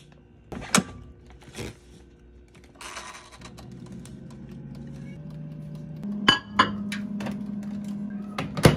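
Kitchen handling knocks and a short rustle, then a countertop air fryer running with a steady low hum from about three and a half seconds in. From about six seconds a slightly higher appliance hum takes over, with two sharp clicks.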